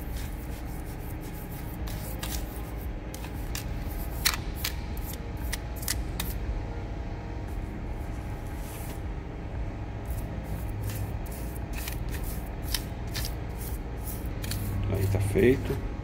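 A metal spoon scraping and tapping in a plastic cup as it stirs and levels damp sand mixed with planting gel, along with the knocks of plastic containers being handled. It is a string of short, irregular clicks and scrapes over a steady low hum.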